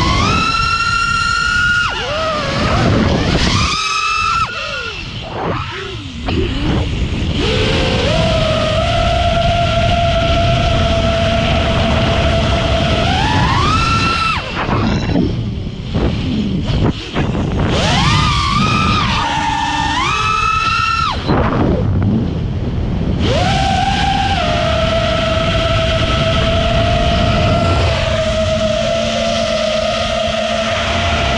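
FPV quadcopter's brushless motors and propellers whining, pitch jumping up and sliding back down with hard throttle punches several times and holding a steady tone through the cruising stretches. A steady rush of air noise runs under it.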